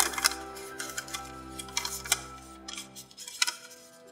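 Background music with long held notes, its low part fading out about three quarters in. Over it come a few short, crisp crackles of origami paper being lifted and creased by hand.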